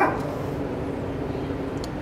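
A dog vocalising faintly over a steady background hum.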